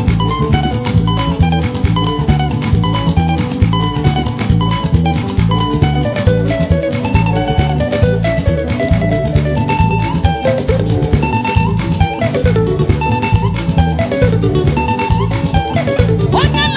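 Upbeat instrumental dance music with no singing: guitar lines over bass and drums keeping a steady quick beat.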